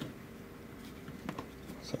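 Small screwdriver working the screws in the face of a brass mortise lock cylinder, giving a couple of faint metal clicks.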